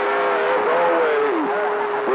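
CB radio receiver audio: garbled, unintelligible voices over a steady whistling heterodyne tone.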